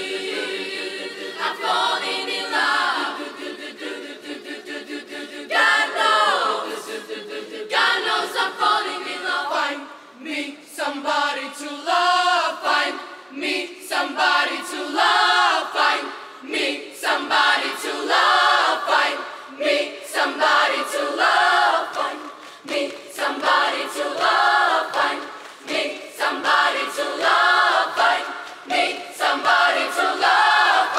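Large girls' choir singing a cappella, with no instruments under the voices. The choir holds chords at first, then from about ten seconds in sings a pulsing rhythm of short repeated notes.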